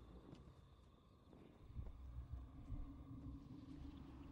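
Quiet film soundtrack: a low rumbling ambience with a few soft thuds in the middle, and a low held musical note coming in about halfway through.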